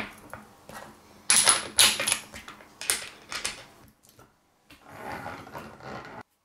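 Metal parts of a hand-cranked bench grinder clinking and knocking as a wire wheel brush, steel washers and a nut are handled and fitted onto the spindle, with several sharp strikes between about one and three and a half seconds in. Near the end there is about a second of rougher, rasping noise.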